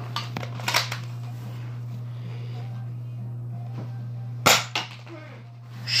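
A green toy dart blaster fires once, a single sharp snap about four and a half seconds in, after a couple of fainter clicks a little under a second in. A steady low hum runs underneath.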